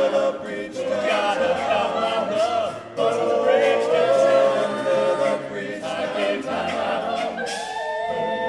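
Male a cappella group singing a rock song in close multi-part harmony, with no instruments. The voices break off briefly about three seconds in, then come back and settle onto a held chord near the end.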